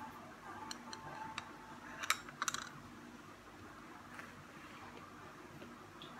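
A metal teaspoon clinking lightly against a drinking glass: a few scattered sharp clicks, with a quick cluster of them about two seconds in, over a faint steady hum.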